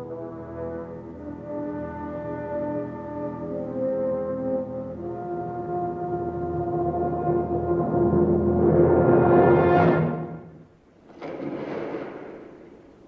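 Orchestral film score led by brass, with sustained horn notes that swell to a loud peak and then break off about ten and a half seconds in. A short noisy sound follows near the end.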